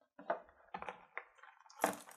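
Hands working a shrink-wrapped card deck out of a black plastic deck tray: a string of light irregular scrapes and clicks, with a louder crinkly rustle near the end.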